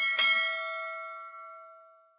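Notification-bell ding sound effect of a subscribe-button animation: two quick strikes, then a ringing chime that fades out over about two seconds.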